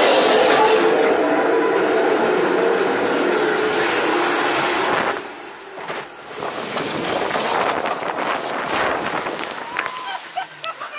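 Log flume boat clattering up the chain lift inside the mountain, a loud steady mechanical rattle that drops away suddenly about five seconds in. Rushing air and water follow as the log goes down the final drop, with a sharp splash near the end.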